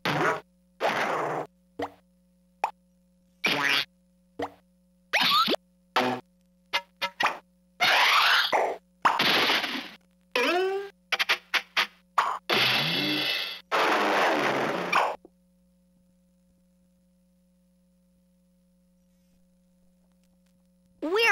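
Bright Starts Having A Ball Swirl And Roll Truck's toy speaker playing a quick run of short electronic sound effects, several with sliding pitch, each cut off abruptly. The sounds stop about 15 seconds in, leaving near silence.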